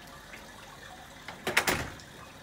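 Soft, steady wash of the heated rooftop pool's water spilling into its grated edge overflow channel. About one and a half seconds in comes a short, loud rush of noise.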